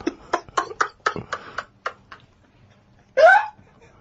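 Laughter in a run of short breathy bursts, about three or four a second, fading away over two seconds. About three seconds in comes a single loud, high gasp of laughter that rises in pitch.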